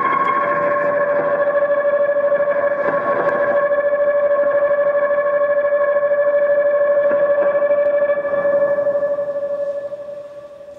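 Electric guitar bowed to sustain one steady note through effects, a drone with a fast pulsing wobble that begins to fade near the end.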